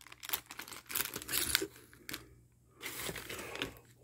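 Plastic packing crinkling and rustling as hands rummage through a cardboard shipping box of bubble wrap, tissue paper and plastic bags. It comes as a run of small crackles, breaks off for a moment a little after halfway, then resumes.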